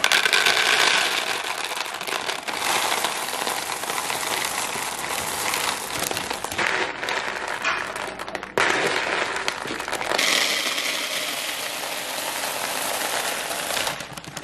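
Dry cereal pieces poured from plastic bags into plastic storage bins: a continuous rattling rush of small pieces hitting hard plastic, with bag crinkling, and a brief break a little after eight seconds.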